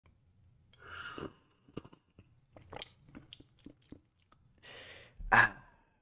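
A man sipping a drink from a mug close to a microphone: a slurping sip, then a run of small swallowing and mouth clicks, and a breathy exhale ending in a short satisfied sigh near the end.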